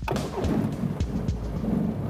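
A light aircraft's engine running with a steady low rumble, heard with background music.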